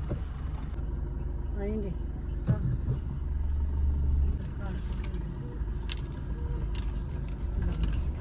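Car engine idling with a steady low hum, with a sharp knock about two and a half seconds in.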